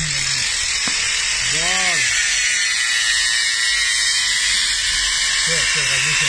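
A steady, high hissing whir at an even level, with a brief voice about two seconds in and again near the end.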